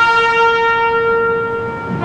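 A ceremonial military call on a single brass instrument, holding one long steady note, with a brief break near the end as the next note starts.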